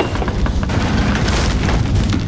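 A deep, loud rumble with a swell of noise about a second in that fades before the end.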